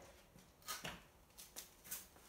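Faint scuffs and rustles: small shuffling footsteps and jacket fabric rubbing as a person pivots on their feet with support, a few soft separate scrapes in the second half.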